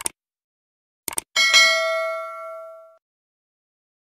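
Subscribe-button sound effect: a click, then a quick double click about a second in, followed by a notification bell chime that rings and fades out over about a second and a half.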